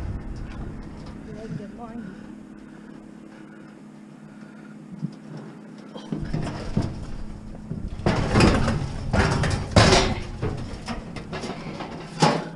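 Stainless-steel Broil-Mate gas barbecue being heaved into a minivan's cargo area. It is fairly quiet at first, then from about eight seconds in comes a run of loud metal clunks and scrapes as it bumps and slides in.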